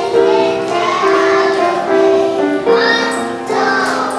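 A group of preschool children singing a song together.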